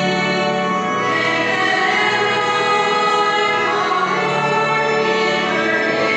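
A choir singing a hymn in long held notes, the chord changing about a second in and again near four seconds.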